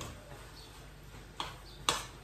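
Two short clinks of a utensil against a cooking pot, about half a second apart, the second louder, in an otherwise quiet kitchen.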